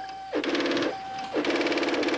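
A steady electronic tone alternating with two bursts of rapid, rattling buzz, each about half a second long. The second burst cuts off just after the end.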